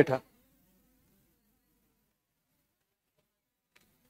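A man's voice finishing a word at the very start, then near silence.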